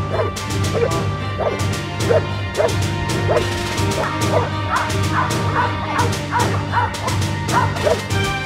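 Belgian Malinois protection dog barking repeatedly at about two barks a second while guarding a child against an approaching decoy, over background music.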